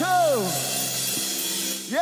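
Live gospel worship music. A voice slides down in pitch at the start, steady held chords sound underneath, and a voice glides up again near the end.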